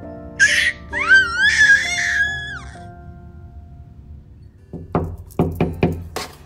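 Short intro jingle of chiming notes, with a high, wavering baby-like giggle sound over it. Near the end comes a quick run of five or six sharp knocks as a door is opened.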